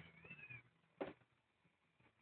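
A kitten gives one faint, high-pitched mew that rises and falls, then a single sharp knock about a second in.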